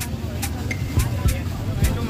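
Busy street traffic with vehicle engines running in a steady low rumble. Over it runs a background music beat, with sharp hits about every half second.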